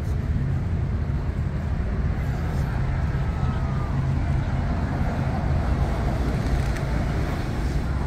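Steady low rumble of city road traffic, with faint voices of passers-by.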